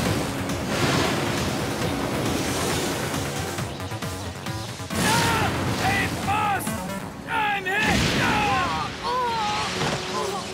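Cartoon battle sound effects: a loud, rushing energy blast that surges several times, over dramatic background music. In the second half a character cries out repeatedly.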